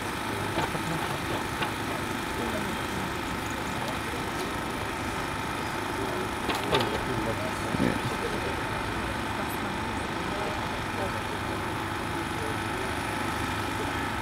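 Portable petrol generator running with a steady hum. A few brief, slightly louder sounds come just past the middle.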